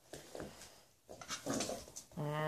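A small dog making one short, soft vocal sound about one and a half seconds in, after a couple of faint knocks or rustles near the start.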